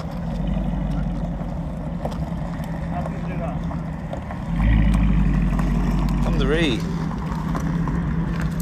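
Low, steady rumble of a car engine as a saloon car moves slowly across gravel, getting clearly louder about four and a half seconds in and easing a little about two seconds later.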